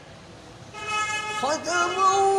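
Quran recitation by a male qari: after a short pause between phrases, the voice comes back about two-thirds of a second in on a held tone, then rises into a sustained chanted note.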